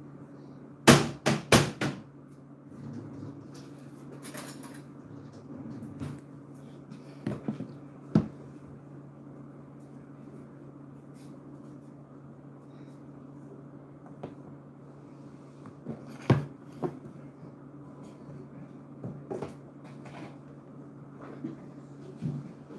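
Kitchen clatter as plastic containers and kitchen items are handled: a quick run of four sharp knocks about a second in, then scattered clicks and taps, over a steady low hum.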